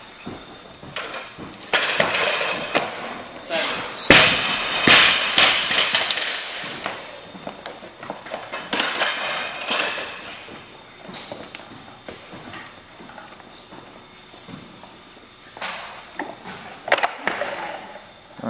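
Weightlifting gym with sudden heavy impacts and clanks from loaded barbells with rubber bumper plates. The loudest is a heavy thud about four seconds in, from a 303 lb bar dropped onto a platform, with more strikes and clatter around five, nine and seventeen seconds.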